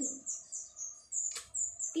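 A small bird chirping: a quick run of short, high notes at about four a second, with one sharp tap about a second and a half in.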